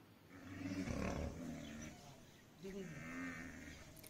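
Greater one-horned rhinoceroses calling while facing off: two faint, drawn-out calls, the first about a second and a half long and the second about a second.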